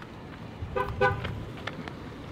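Two short car horn toots in quick succession, a bit under a second in, over low steady parking-lot background noise. A few faint clicks follow.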